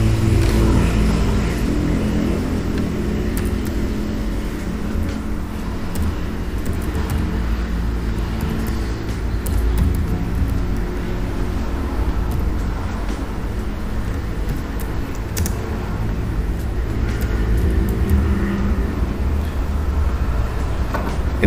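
A steady low mechanical hum and rumble with a faint pitched drone, and a few faint clicks.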